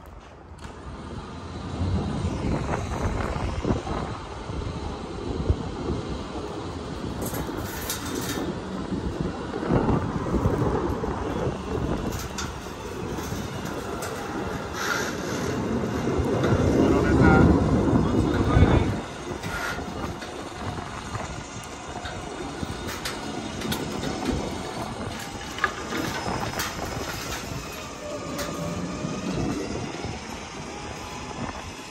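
A stripped, engineless SUV being pulled up steel loading ramps onto a flatbed trailer's diamond-plate deck: rumbling with metal clanks and knocks, loudest a little past halfway through.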